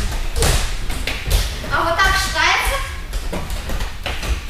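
Repeated soft thuds and slaps of light balls being tossed and caught by several children on judo mats, with a brief voice calling out about two seconds in.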